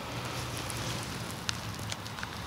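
Steady outdoor background noise with a crackly hiss of wind on the microphone and a faint click about one and a half seconds in.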